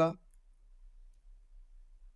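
Near silence: a pause in the narration with only a faint low hum.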